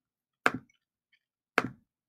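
Two computer mouse clicks, about a second apart, made while picking a colour in an on-screen colour picker.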